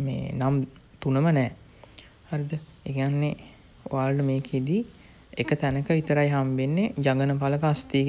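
A man's voice talking in short phrases with pauses between them, over a steady high-pitched whine.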